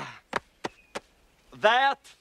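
Three short, sharp knocks in the first second. Near the end comes a brief voiced exclamation that falls in pitch.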